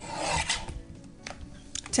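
A Fiskars paper trimmer's cutting arm pressed down, slicing through a layered cardstock panel with a short rasping cut, followed by a few light clicks as the card is handled.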